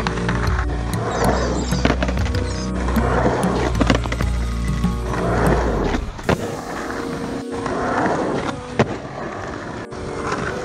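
Skateboard wheels rolling and carving on concrete bowl walls, with a sharp knock near the end, under background music whose heavy bass drops out about six seconds in.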